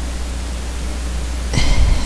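Steady recording hiss over a low hum, the noise floor of a lavalier microphone setup. A brief breathy sound comes in near the end.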